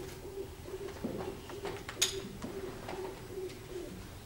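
A dove cooing quietly, a low steady call broken into short pulses, with a few small clicks and one sharper click about two seconds in.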